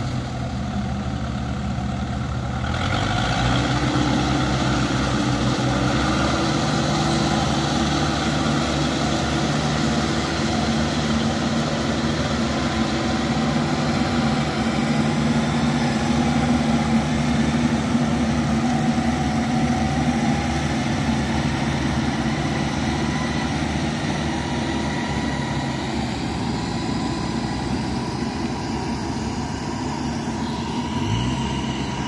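Yanmar rice combine harvester's diesel engine running steadily under load while it cuts and threshes rice. The pitch shifts slightly about two and a half seconds in.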